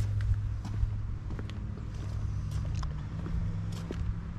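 Footsteps on asphalt as someone walks around a parked car, with a steady low hum underneath.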